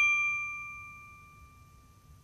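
A single bright, bell-like ding from the logo intro's sound effect, its ring of a few clear tones fading away steadily over about a second and a half, with a faint low rumble underneath.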